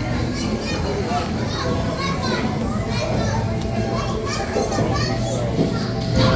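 Children's voices, shouting and chattering as they play, fill a busy room over a steady low hum.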